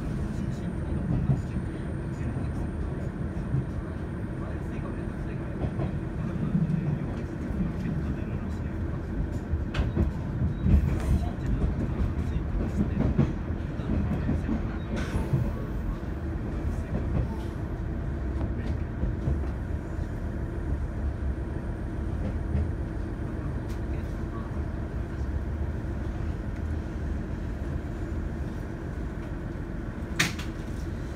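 JR East KiHa 110 series diesel railcar heard from inside the passenger cabin: a steady low rumble of engine and wheels on rail, with a few scattered sharp clicks. It eases slightly toward the end as the railcar draws into a station.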